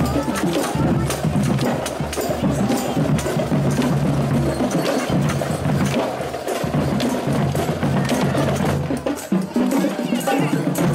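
Live street music with a steady beat of sharp knocks and clicks from hand percussion, with a crowd talking.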